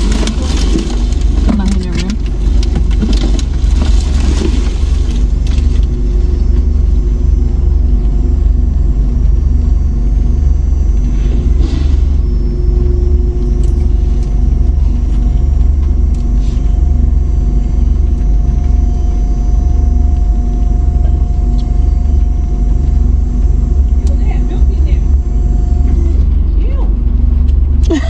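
Car engine idling, heard from inside the parked car's cabin: a steady low drone throughout.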